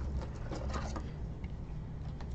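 A steady low hum with faint, soft rustles and ticks of trading cards being handled.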